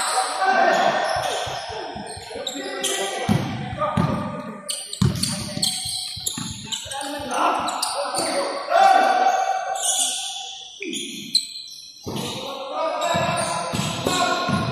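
A basketball bouncing and being dribbled on a gym floor during play, a run of sharp knocks, with players' voices calling out. Both ring with the echo of a large hall.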